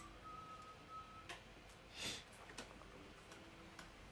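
Near silence: quiet room tone with a few faint clicks and a brief soft rustle about two seconds in.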